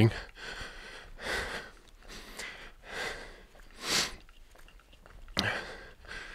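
A man breathing hard while jogging, out of breath, with heavy breaths about once a second; the loudest comes about four seconds in.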